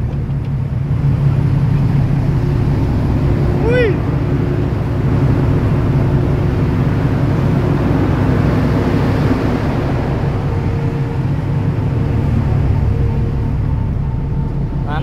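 Steady low drone of a ship's engine and propeller under way, mixed with the rush of the churned wake water along the stern. A brief vocal call about four seconds in.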